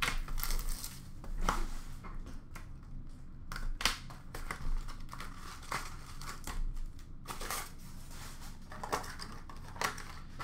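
A sealed box of hockey trading cards being opened by hand: irregular crinkling and tearing of its wrapping and cardboard, with short clicks and scrapes.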